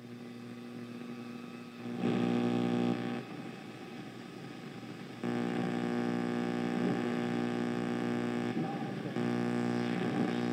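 A steady low buzzing drone with many overtones, the strange noise coming from the boiler. It swells about two seconds in, falls back a second later, and comes back louder just after five seconds, holding there.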